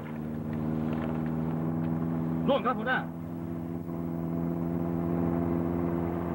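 Steady drone of a small boat's engine running on the water, holding one even pitch, with a man's brief spoken reply about two and a half seconds in.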